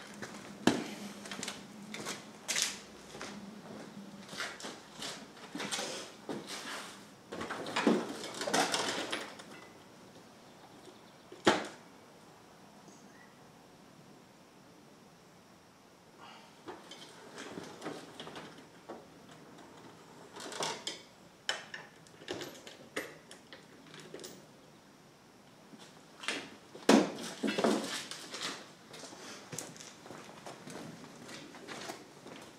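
Metal tools and sockets clinking and clattering as someone rummages through a tool chest for a socket, with a single sharp knock a little before halfway and a louder burst of clatter near the end.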